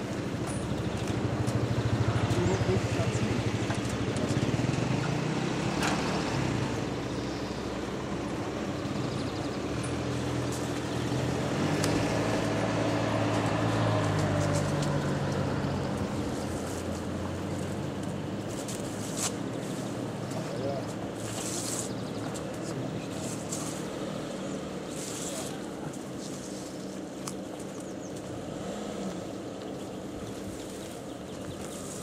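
Indistinct voices over the steady low hum of a running motor vehicle, with a series of short rustles in the second half.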